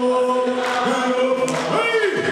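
A crowd singing together in many voices, holding long, steady notes.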